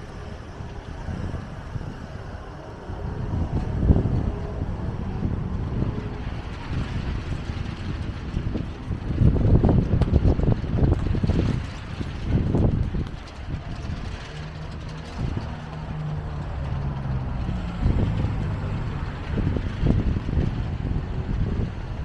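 Town street ambience: motor vehicle engines and traffic rumbling, loudest about nine to thirteen seconds in, with a steady engine hum a little later and wind buffeting the microphone.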